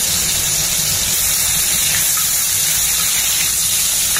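Ginger-garlic and spice paste frying in hot oil in an aluminium kadai, a steady sizzle, as chopped tomatoes go into the oil.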